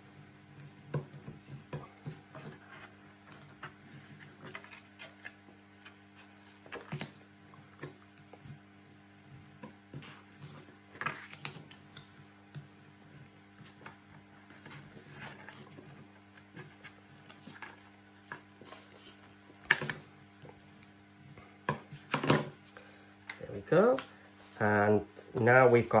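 Soft handling sounds of cardstock and tape: paper rustling, light taps and a plastic bone folder rubbing along the card as the tape is pressed down and the card folded, over a steady low hum. A man's voice comes in briefly near the end.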